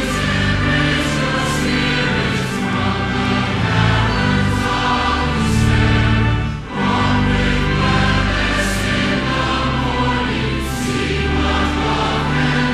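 A congregation and choir singing a processional hymn, many voices over held low notes of the accompaniment, with a brief break between lines about two-thirds of the way through.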